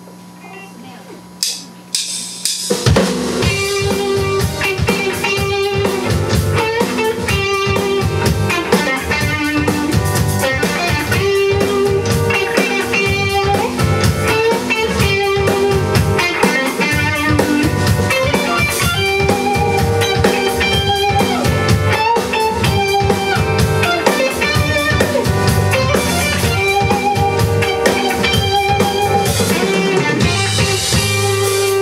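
Live band of electric guitar, bass, drums and keyboards starting a song: after a quiet couple of seconds with a low hum and two clicks, the full band comes in under three seconds in and plays on with a steady drum beat.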